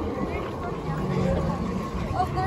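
Indistinct chatter of a passing crowd, scattered voices over a steady low rumble.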